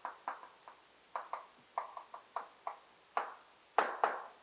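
Chalk on a blackboard while writing: a dozen or so short, irregular taps and strokes, the last ones the loudest.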